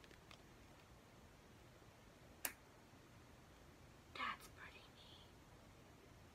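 Near silence, broken by one sharp click about two and a half seconds in, as the ring grip on the phone case is flipped. A brief faint whisper follows near four seconds.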